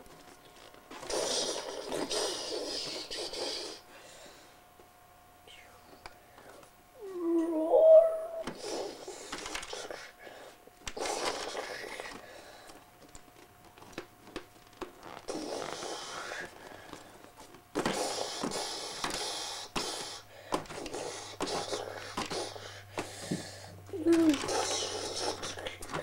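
A child's voice making breathy, whispered monster noises in bursts with short pauses, with a short pitched growl about eight seconds in and another near the end.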